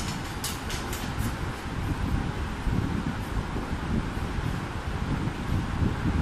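Steady low rumbling background noise with no clear source, with a few short faint clicks in the first second or so.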